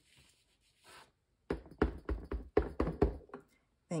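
A clear acrylic stamp block with a cling stamp knocking down on the work surface about eight times in quick succession over two seconds, starting about a second and a half in.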